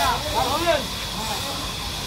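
Several men's voices calling out together in a rhythmic work chant as they shove a huge log by hand, over a steady high hiss. The voices fall away about a second in.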